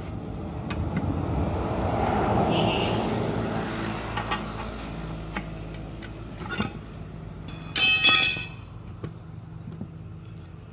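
Steel tyre irons clinking against a steel wheel rim while a tyre is levered off, with a loud metallic scrape and ring at about eight seconds. A rumble of background noise swells and fades over the first few seconds.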